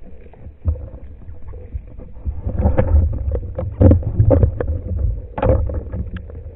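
Underwater rumble of water moving past a speargun-mounted camera, with irregular clicks and knocks scattered through it.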